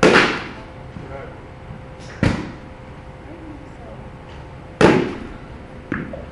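A softball bat hitting balls three times: sharp cracks about two and a half seconds apart, each with a short ringing tail, the first and last the loudest. The coach judges these hits still a little on top of the ball, driving them downward.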